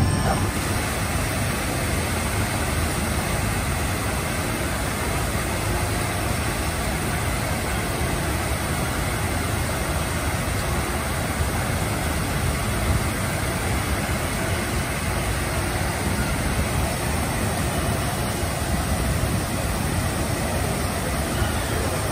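A steady, even rushing noise with no distinct events, holding the same level throughout.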